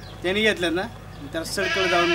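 Men's voices speaking Marathi dialogue. Near the end comes a long, wavering, drawn-out vocal 'ho'.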